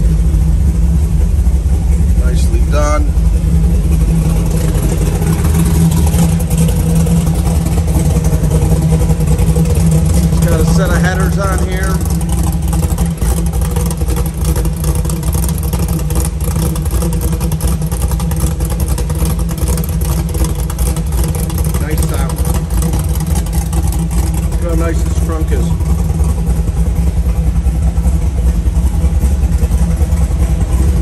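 Rebuilt 350 cubic-inch V8 of a 1967 Chevrolet Camaro, fitted with headers, idling steadily.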